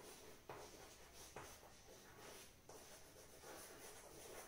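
Faint chalk writing on a chalkboard: a series of short, irregular scratches and taps as the chalk forms letters.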